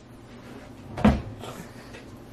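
A single knock about a second in, like a small cupboard door shutting, followed by a fainter knock about half a second later.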